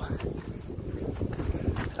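Wind buffeting the microphone: a low, uneven, gusting rumble.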